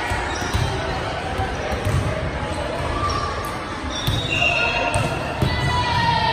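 Volleyball thudding as it is bounced and struck on a hardwood gym floor, several irregular thuds echoing in a large hall, with voices of players and spectators.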